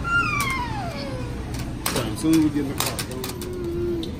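A toddler crying and whining: a long high wail that falls steadily in pitch over the first second and a half, followed by two lower drawn-out wails.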